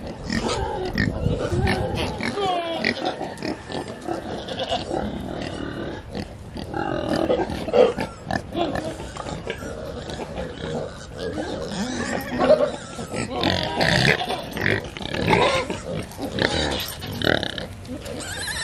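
Several pigs grunting irregularly as they root and eat in mud.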